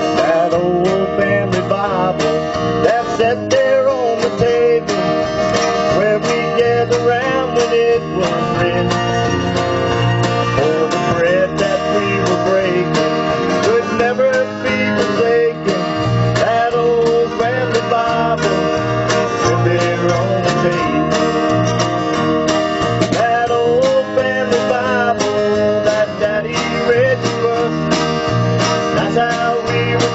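Live country band playing a song: strummed acoustic guitar with bass and drums, and a wavering melody line on top.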